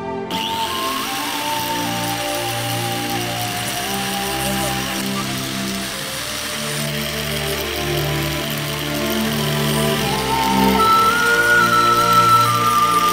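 Electric angle grinder with a flap disc starts just after the beginning and runs steadily while a small piece of wood is pressed against the spinning disc to sand it, over background music.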